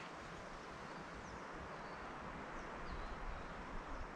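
Faint, steady woodland ambience, with a few soft, high bird chirps scattered over it.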